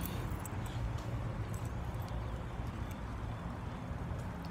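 Steady low outdoor rumble on a handheld phone's microphone, with a few faint scattered clicks.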